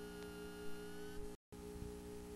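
VHS tape playback noise: a steady hum of several tones over hiss. It cuts out completely for a moment a little past halfway, then resumes unchanged.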